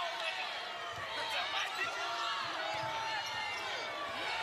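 Basketball game sound on court: a ball dribbling on the hardwood amid players' and crowd voices in the arena, at a steady level with no single loud event.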